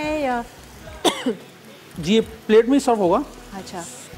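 Talking, with a low sizzle from food frying in a pan on the stove in the gaps between the words.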